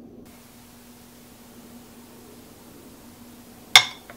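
Faint steady hiss with a low hum, then near the end one sharp clink of a metal spoon against a ceramic plate as it scrapes up grated ginger.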